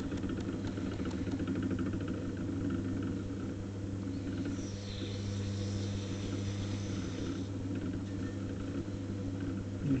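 Electric potter's wheel motor running with a steady low hum as the wheel spins under a tea bowl being thrown. A higher hiss joins for a few seconds in the middle.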